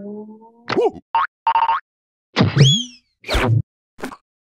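Cartoon sound effects and wordless character squeaks: a held ringing tone fades out in the first second, then a string of short comic vocal squeaks and blips, with a sharp rising whistle-like glide about two and a half seconds in.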